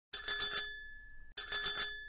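A bicycle bell rung twice, about a second and a quarter apart. Each ring is a quick rattle of several strikes that rings on and fades away.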